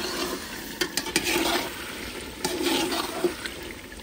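Metal ladle stirring and scraping chicken frying in oil in a metal pot, in three strokes, with sharp clicks of the ladle against the pot about a second in.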